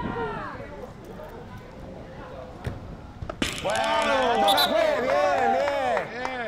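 Players calling and shouting during a small-sided football match, several raised voices overlapping loudly from about halfway through, just after a sharp knock like a ball being kicked.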